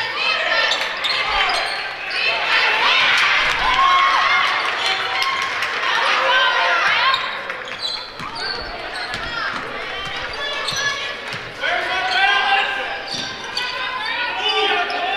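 Basketball game sound in a school gym: a ball bouncing on the hardwood floor, sneakers squeaking, and players and spectators calling out, all with a hall's echo.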